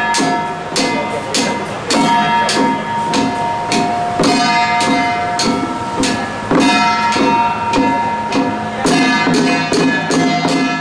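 Handheld temple drums beaten in a fast, even rhythm, about two to three strikes a second, with sustained ringing tones held over them.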